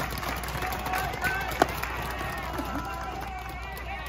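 A baseball pitch smacking into a catcher's leather mitt once, about a second and a half in, a single sharp pop. Spectator chatter runs underneath.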